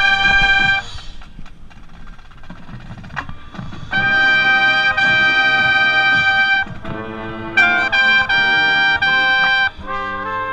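Lead trumpet played close to the microphone, with the marching brass section around it. A loud held chord cuts off about a second in, and the next few seconds are quieter. A second loud chord is held from about four seconds in for roughly two and a half seconds, then short separate notes follow near the end.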